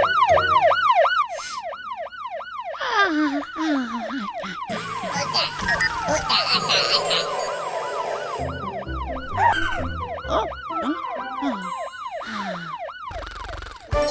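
Cartoon fire truck's roof-mounted siren loudspeaker sounding a fast rising-and-falling yelp, about four wails a second. It comes in several bursts, loudest at the start and fainter in the second half.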